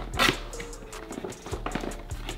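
Background hip-hop beat with steady held notes and regular clicks, and a short loud rustle a fraction of a second in from a hand rummaging inside a cardboard box.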